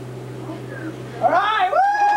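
A person calling out in a high-pitched voice: two drawn-out cries that rise and fall, starting a little over a second in, over a steady low electrical hum.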